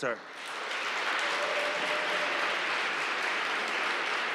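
Audience applauding, building up over the first half-second and then holding steady.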